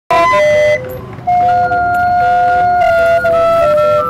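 Mexican organillo, a hand-cranked German-built barrel organ, playing a melody in long, steady, flute-like pipe notes, with a short lull about a second in.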